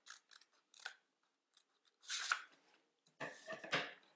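Scissors cutting through a paper sleeve pattern: faint clicks at first, then louder cuts about two seconds in and again near the end.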